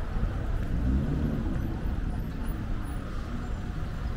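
Street traffic ambience: road vehicles running with a steady low hum.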